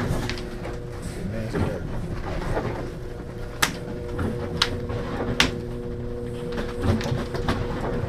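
Handling noises at a workbench as fur pelts are laid out and moved about: soft rustles with a few sharp clicks and knocks in the middle, over a steady electrical hum.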